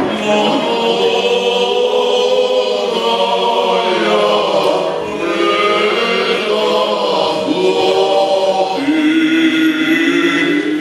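Choir singing Orthodox liturgical chant, with long held notes.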